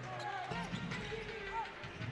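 Quiet basketball arena sound: faint crowd voices and a few faint knocks of the ball bouncing on the hardwood court.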